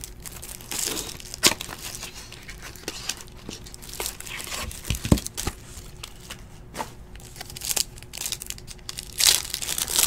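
Plastic pack wrapping and a clear card sleeve crinkling while trading cards are handled, in irregular rustles with scattered sharp clicks. There are a few louder knocks, the sharpest about five seconds in, and a burst of crinkling near the end.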